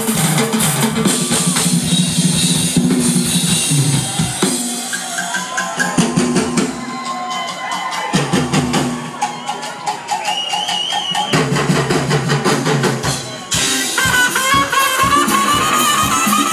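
Live funk band playing loud through the PA, drum kit driving the beat, heard from within the crowd. Horn lines, including saxophone, come in strongly near the end.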